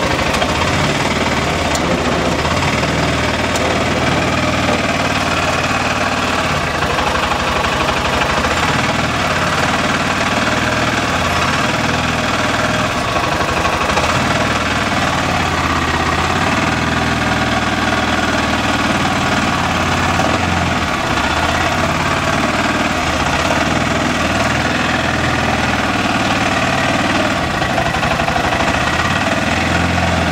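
Arctic Cat Prowler 700 XTX utility vehicle's engine idling steadily, close by.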